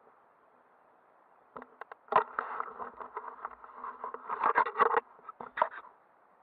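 Rubbing, rustling and clicking against the body of a handheld action camera as it is moved, in an irregular run from about a second and a half in until shortly before the end, over a faint steady hiss.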